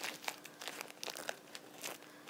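Paper wrapper crinkling in small irregular crackles as a wheel of brie is unwrapped by hand.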